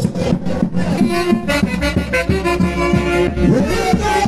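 Saxophone orchestra playing a huayno; held horn notes come in over the beat about a second in.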